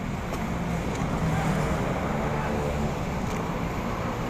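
Road traffic close by: vehicle engines running with a steady low hum.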